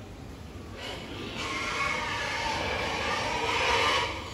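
Many pigs squealing together, building from about a second and a half in and loudest near the end, over a steady low rumble.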